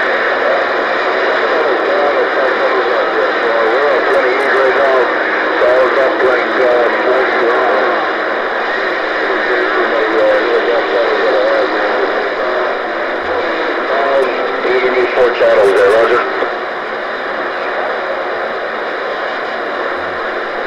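CB radio receiving a distant station over skip: a voice buried in heavy static, too garbled to follow, with rough propagation conditions. About 16 seconds in the voice drops out and the static hiss goes on at a lower level.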